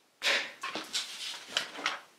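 Paper rustling as a spiral-bound notebook page is lifted and turned over. It starts with a sudden loud rustle a moment in, followed by several shorter crinkles.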